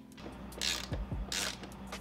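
A bolt and washer being screwed down into a rubber well nut, giving two short rasping scrapes less than a second apart along with faint knocks.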